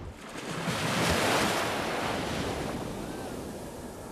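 Ocean surf: a wave rushes in, swelling to its loudest about a second in and then slowly washing away.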